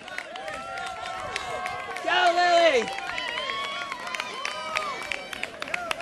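Crowd of spectators calling out and cheering, many voices overlapping, with a louder shout about two seconds in and scattered handclaps later on.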